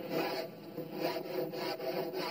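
A surfboard being sanded by hand: sandpaper rasping over the board in repeated back-and-forth strokes, about two or three a second.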